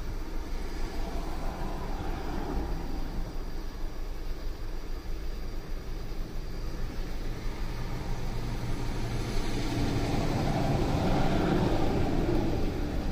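A 2008 Volkswagen Jetta's engine idling, heard from inside the car as a steady low hum that grows a little louder near the end.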